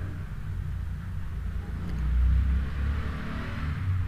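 A low background rumble that swells a little about halfway through and then eases off.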